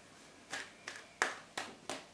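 Tarot cards being handled over a wooden table: a quick run of about five sharp slapping taps.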